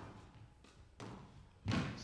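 Squash ball impacts during a rally, struck by racket and hitting the court walls: two sharp knocks about a second in and near the end, the second louder.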